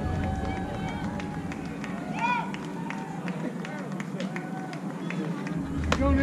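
Voices calling out across a softball field: scattered distant chatter, with a louder drawn-out shout a little past two seconds in and another at the end.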